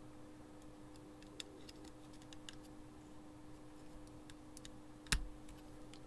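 Faint small clicks and taps of 20-pin male pin headers being handled and fitted into matching header sockets on a circuit board, with one sharper click about five seconds in. A faint steady hum lies underneath.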